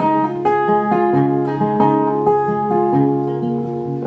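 Solo acoustic guitar, a steady run of picked notes about two a second, each ringing on into the next.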